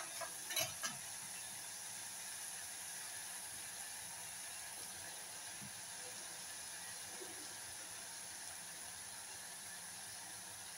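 Faint, steady hiss from a steel pot of fish curry cooking on a gas burner, with a few light clicks in the first second.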